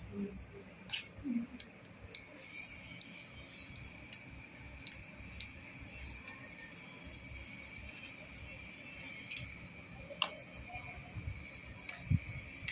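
Scattered small clicks and taps of plastic cosmetic tubes, cases and packaging being handled and set down, over a faint steady hum.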